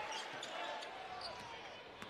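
Basketball being dribbled on a hardwood arena court, over the murmur of the crowd.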